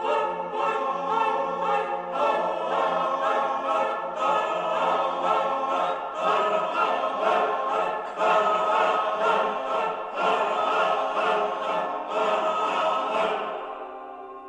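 Men's choir singing, many voices in dense chords with a pulsing rhythm, easing off to a quieter held chord just before the end.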